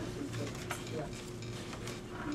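Room noise: a steady electrical hum with scattered small clicks and rustles, and brief faint voice fragments.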